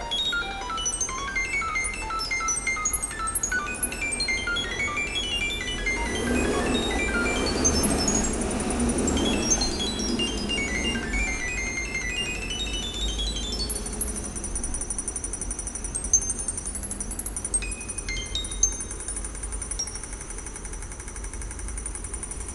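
Computer-synthesised notes from a light-controlled photoresistor instrument (Arduino feeding a Processing sketch): a rapid, chaotic string of short beeping tones that jump up and down in pitch, going deeper as a hand shades the sensor. A rushing noise swells under the notes for a few seconds about a quarter of the way in, and in the second half the notes thin out into high held tones with a few clicks.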